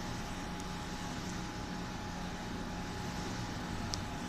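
A steady machine hum: a constant low drone and a faint higher tone over an even hiss, with a short click near the end.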